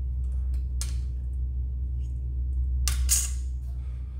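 A metal clay blade scraping against a hard work surface as it is slid under a sheet of polymer clay: a short scrape just under a second in, and a louder, longer one about three seconds in, over a steady low hum.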